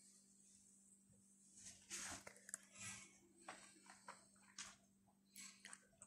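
Near silence: a faint steady hum with a few faint, brief scattered sounds.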